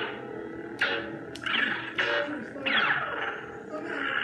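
Neopixel lightsaber prop's sound board playing its steady electric hum, broken by several quick swing swooshes that slide in pitch as the blade is moved, with a couple of sharp clicks early on.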